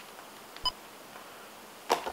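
A single short electronic beep from a cordless phone handset as the call is ended, over quiet room tone. A sharp click follows near the end.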